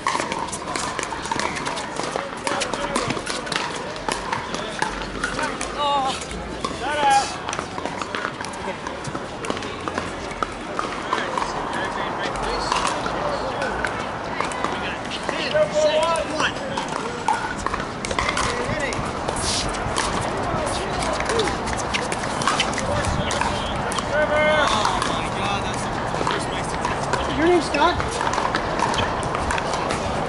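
Pickleball paddles hitting the plastic ball: repeated sharp pops from this and the neighbouring courts, over the steady background chatter of players and onlookers.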